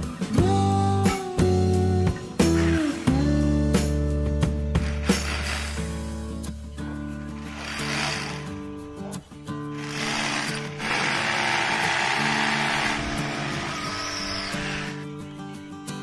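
Guitar background music, with a hammer drill boring into a concrete floor heard underneath in three bursts over the second half, the longest about five seconds.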